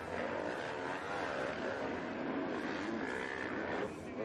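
Motocross bike engines revving on the track, their pitch rising and falling as the riders work the throttle.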